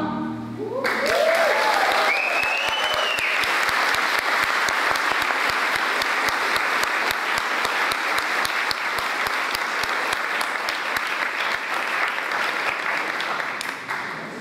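Audience applauding in a large hall right after a choir's final note. The clapping starts about a second in, with a couple of short rising-and-falling cheers in the first few seconds, and eases off near the end.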